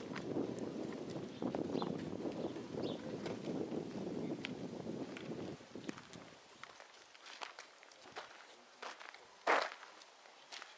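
Footsteps of a person walking with a handheld camera, with rustling handling noise that is louder for the first half and then drops away. A single short, loud knock or scrape comes near the end.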